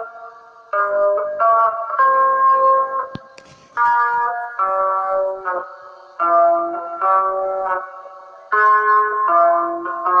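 Free-jazz blues played on a guitar: chords struck one after another at an uneven pace, each ringing out and fading before the next, with short lulls between phrases.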